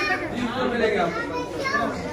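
Voices of people talking over one another, children's voices among them, in a busy shop.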